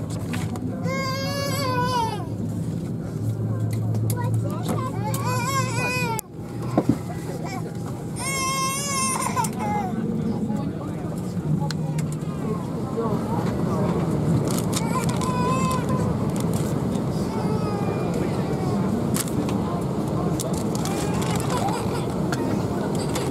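Airliner cabin during boarding: a steady low hum and passenger murmur, with a baby crying out three times in the first ten seconds, each a high wavering wail.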